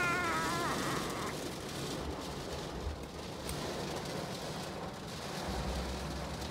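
A baby's drawn-out whiny vocal sound, falling in pitch and fading out in the first second. Then a steady hiss of heavy rain on the car with a low rumble, heard from inside the car.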